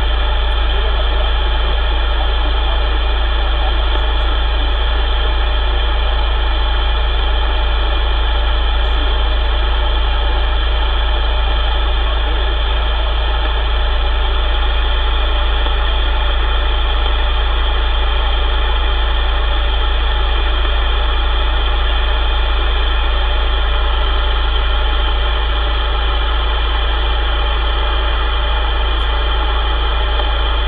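CB radio receiver with the squelch open: a steady, unchanging hiss and buzz over a strong low hum, with no readable voice coming through.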